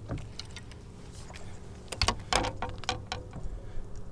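Fishing tackle being handled: light rustling, then a cluster of short, sharp clicks and taps in the second half, over a faint steady low hum.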